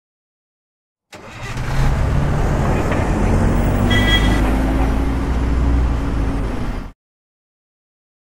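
A motor vehicle engine running with road noise, its pitch rising slowly as it revs. It starts abruptly about a second in and cuts off sharply about six seconds later.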